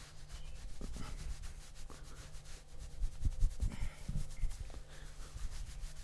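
A towel rubbing briskly over wet hair close to the microphone: a continuous scratchy rustle, with a few soft low thumps about three to four seconds in.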